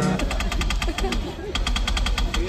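A rapid, even clicking, about a dozen clicks a second, in two runs with a short break in the middle.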